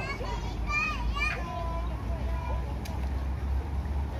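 Children's high voices calling and chattering, most of it in the first second and a half, over a steady low background rumble.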